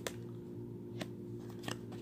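Tarot cards being handled and a card laid onto the spread: three light clicks of card against card, over a faint steady low hum.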